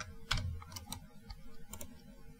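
Computer keyboard typing: a handful of separate, unevenly spaced keystrokes.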